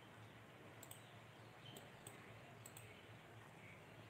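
Near silence: a faint steady hiss with a few small scattered clicks.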